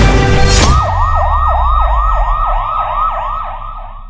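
Music cuts off under a second in and an emergency-vehicle siren takes over, in a fast up-and-down yelp of about three cycles a second, over a low rumble and fading toward the end.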